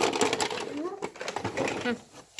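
Hard plastic toy tools clattering and knocking in a plastic tray as they are handled and set down: a quick run of small clicks and taps, with a quiet voice now and then.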